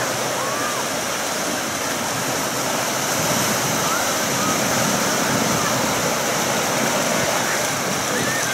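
Steady wash of small surf breaking on a sandy beach, with faint scattered voices of bathers in the distance.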